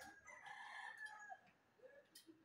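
A rooster crowing once, faint, a single drawn-out call of about a second and a half.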